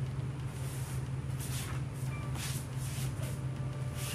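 Steady low hum of room noise in a wooden dojo. Over it come a few faint soft rustles of a hakama and a katana as the sword is drawn from its scabbard and raised overhead.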